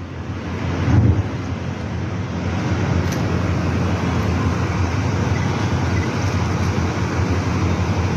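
Steady outdoor background rumble, strongest in the low range, with a louder swell about a second in.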